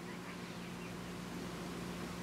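Quiet room tone: a steady faint low hum with a light hiss.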